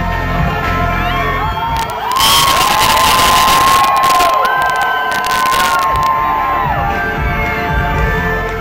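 Concert crowd cheering and yelling, with long high-pitched yells close by, loudest from about two seconds in to about seven. The music drops away beneath the cheering and comes back near the end.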